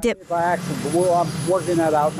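A man talking in short phrases over a steady engine-like rumble and hiss in the background.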